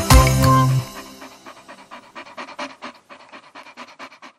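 The children's song ends on a final chord about a second in, followed by a cartoon puppy panting in quick short breaths, about four a second.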